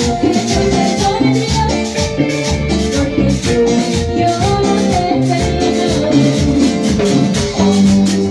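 Live cumbia band playing, with a steady beat, a bass line and a melodic lead.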